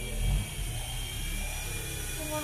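Small electric RC helicopter (Nine Eagles Bravo SX) motor and rotors whining steadily at a high pitch, over a low rumble.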